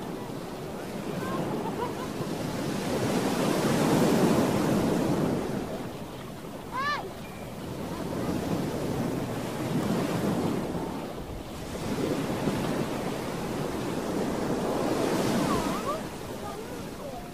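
Surf on a beach: waves washing in, the noise swelling and falling away in slow surges every five or six seconds. A short high-pitched call cuts through about seven seconds in.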